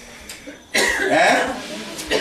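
A person's cough, sudden and loud, a little under a second in, trailing off into voice.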